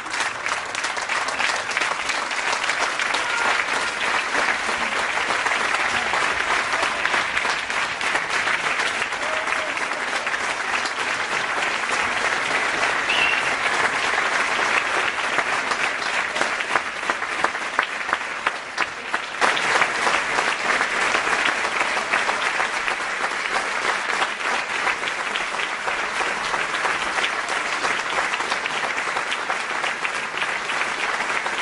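Large arena crowd applauding steadily, a dense wash of clapping that thins briefly a little past halfway and then picks up again.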